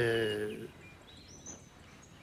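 A few faint, short, high bird chirps over quiet outdoor ambience, about a second in, after a man's drawn-out word ends.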